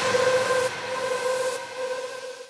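The tail of an electronic background music track: a single held synth note with a hissy wash, fading out.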